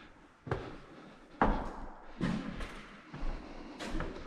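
Footsteps on a bare wooden floor, a step roughly every second, each one a separate knock.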